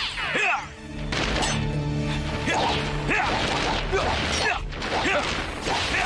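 Dramatic theme music with action sound effects laid over it: sweeping whooshes and several sharp crashing hits.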